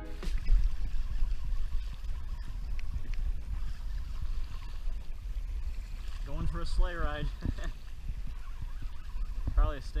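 Steady low rumble of wind on the microphone and water washing along a kayak's hull as a hooked stingray tows it along, with a few spoken words about two-thirds of the way in.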